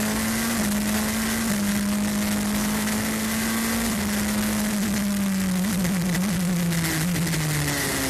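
LMP2 prototype race car's engine heard onboard, holding a steady drone with small steps in pitch, then easing gradually lower over the last few seconds. A constant rush of wind and road noise runs underneath.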